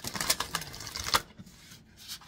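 Tarot cards being shuffled in the hands: a rapid run of crisp clicks for about a second, ending with a sharper snap, then quieter.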